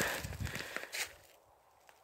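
Footsteps with rustling and a few sharp knocks, dying away to near silence after about a second.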